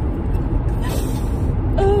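Steady low rumble of engine and road noise inside a moving car's cabin, with a short breathy hiss about a second in and a brief voiced 'oh' near the end.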